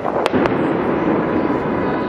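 Fireworks going off overhead: two sharp cracks in quick succession within the first half second, over a continuous rumbling din of further bursts.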